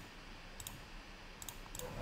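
Several faint computer mouse clicks, with a few close together in the second half, as a fill colour is picked from a spreadsheet's colour menu.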